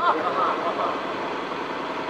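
A pause in amplified speech: a word trails off right at the start, then a steady background hum and murmur with no voice, until speech returns just after.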